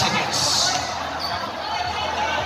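A basketball being dribbled on a hard court, with crowd voices around it.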